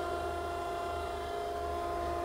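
Okamoto ACC-1224-DX hydraulic surface grinder running, its hydraulic pump and grinding-wheel spindle going: a steady whine of several pitches over a low hum.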